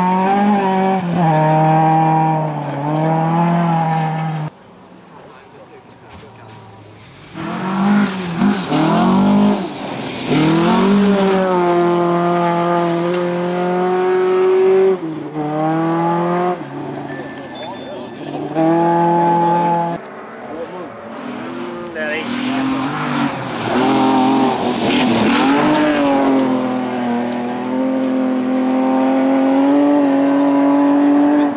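Rally cars passing one after another on a gravel stage, their engines revving hard and falling away with each lift and gear change. A quieter stretch about five seconds in gives way to the next car.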